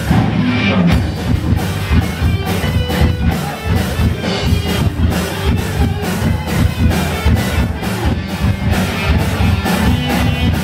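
Live rock band playing an instrumental passage: electric guitar through a Marshall amp, bass guitar and a Tama drum kit keeping a steady beat, with no vocals.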